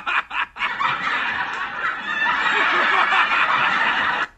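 Laughter sound effect: a few short bursts of laughing, then about three seconds of continuous laughing that cuts off suddenly near the end.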